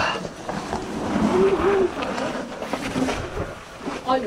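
People crawling over rock in a cave passage: clothing rustling and scuffing against the rock, with scattered small knocks. A short voice sound comes about a second and a half in.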